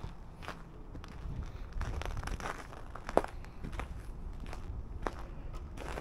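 Footsteps on packed snow and ice, uneven steps about one to two a second, with one sharper crack about three seconds in, over a low steady rumble.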